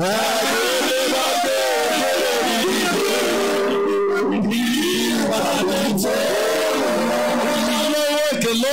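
Church congregation singing together in worship, many voices at once, loud and continuous.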